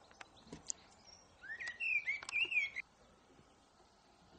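A songbird singing one short warbling phrase of whistled notes that rise and fall, from about one and a half to nearly three seconds in, over a faint outdoor background with a few small chirps and ticks.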